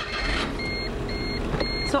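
Electronic beeper from a car sounding three short, evenly spaced beeps over a steady rushing background noise.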